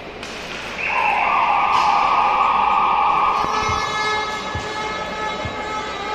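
Ice-hockey arena horn sounding: a loud, steady blaring tone that starts about a second in, holds for about two and a half seconds, then fades away, signalling the end of play.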